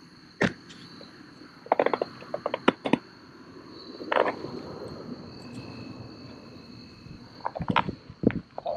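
Scattered sharp clicks and knocks from fishing tackle being handled close to the microphone, a cluster about two seconds in and more near the end. A steady, high, thin insect chirring runs underneath.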